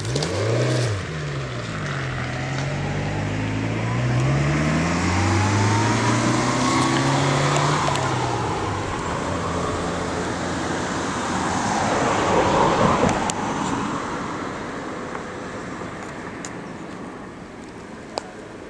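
A motor vehicle driving past, its engine pitch rising and falling in the first half, growing loudest about thirteen seconds in and then fading away.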